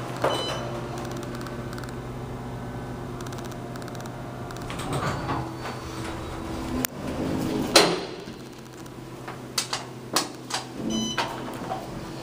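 Otis Series 5 hydraulic elevator running, with a steady low hum throughout. A string of sharp knocks and rattles begins about five seconds in, the loudest near the middle.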